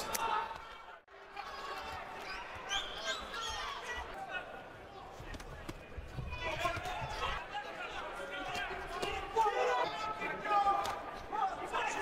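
Dull thuds of gloved punches landing during a boxing exchange, over the voices of an arena crowd and ringside.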